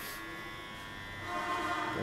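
A steady high-pitched electrical whine, several thin tones held level, with a faint steady pitched sound joining in during the second half.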